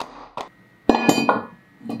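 Steel wheel-assembly hardware clinking together: a light click, then one sharp metallic clink about a second in that rings briefly.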